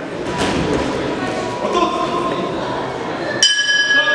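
Hall noise and voices, then, about three and a half seconds in, a metal round bell struck once, giving a sharp clang that rings on steadily. It marks the end of the round.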